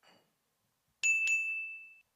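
A timer chime dings as the countdown runs out, marking the end of the allotted time. It sounds twice in quick succession about a second in, then rings on and fades before cutting off.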